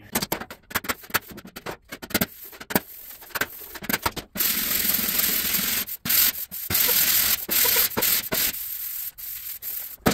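Body file scraping across a bare sheet-steel truck fender: a run of short, quick scrapes, then about four seconds of longer strokes with brief breaks between them. The filing shows up any low spots left after picking them up from behind.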